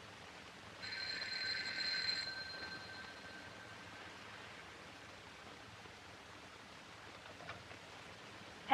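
Telephone bell ringing once, about a second in, for about a second and a half, its tone fading out afterwards, over the steady hiss of an early sound-film soundtrack. A faint click near the end.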